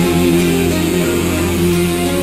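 Melodic hard rock song playing: an instrumental passage led by guitar, with sustained, held notes.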